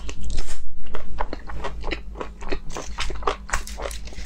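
Close-miked biting and chewing of a sauce-glazed chicken drumstick: a quick, irregular run of clicky mouth sounds, loudest in the first second.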